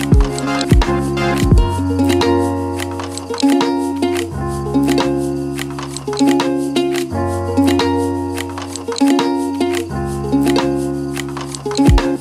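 Lo-fi hip hop music with a steady drum beat, a deep bass line that changes note every few seconds, and sustained chords over it.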